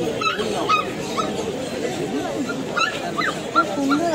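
Puppies giving a string of short, high-pitched cries, roughly two a second, over people talking.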